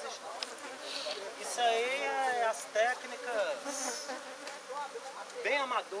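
Honeybees buzzing in numbers around an opened hive, with single bees flying close past, their buzz rising and falling in pitch as they come and go.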